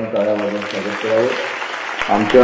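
Audience applause, a steady patter, with a man's voice talking over it.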